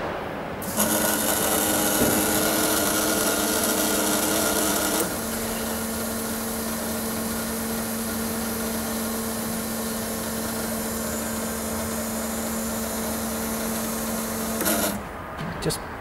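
A set of Honda S2000 fuel injectors on an injector test bench, pulsed rapidly at a simulated 8000 rpm with a 6 ms pulse to see whether they break down at high revs. It is a steady mechanical buzz with a steady tone. It is louder for the first few seconds, then settles to a lower, even level, and stops shortly before the end.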